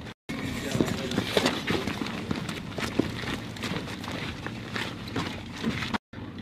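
Footsteps and the clatter of gear as people move on a gritty floor, a string of irregular scuffs and knocks, with indistinct voices under them. The sound cuts out briefly just at the start.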